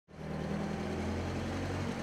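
Vehicle engine idling: a steady low hum that fades in at the start.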